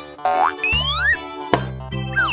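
Cartoon sound effects over light children's background music: two springy glides rising in pitch in the first second, then a sharp click about a second and a half in.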